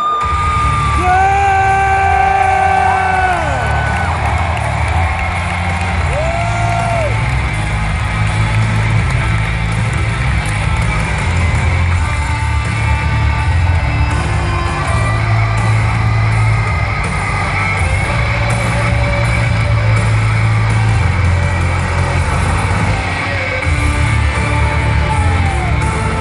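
Loud music with a heavy bass beat playing over an arena PA, under the noise of a large crowd. There are long drawn-out shouts from the crowd in the first few seconds.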